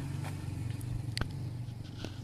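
A motorcycle engine running steadily at low pitch, with one sharp click about a second in.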